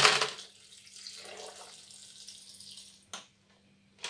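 Water poured into a blender jar packed with fruit chunks: a splashy start, then a steady pour that tapers off over about three seconds, followed by a short knock.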